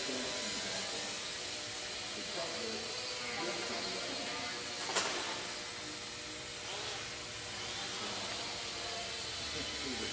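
Blade mQX micro quadcopter's four small brushed motors and propellers buzzing steadily as it hovers and flies, with one sharp click about halfway through.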